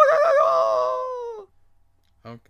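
A man's voice imitating the Wilhelm scream: one long yell that wobbles up and down in pitch, then sags and falls off, ending about one and a half seconds in.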